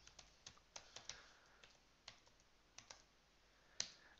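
Faint keystrokes on a computer keyboard, a loose run of light clicks, with one louder key click near the end.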